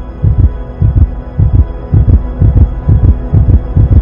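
Heartbeat sound effect: low double 'lub-dub' thumps about twice a second, coming slightly faster toward the end, over a steady droning music tone.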